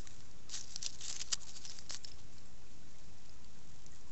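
Dry leaves and gravel rustling and crackling as fingers poke through the leaf litter. The crackles come in a short cluster during the first two seconds, over a steady background hiss.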